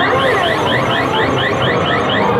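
Claw machine's electronic sound effect during a grab: a fast run of short rising chirps, about six a second, that stops near the end, over steady arcade background noise.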